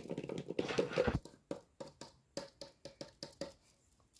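Handling noise of a red plastic toy fork and cardboard cut-outs: rustling at first, then a string of light taps about three a second that stop shortly before the end.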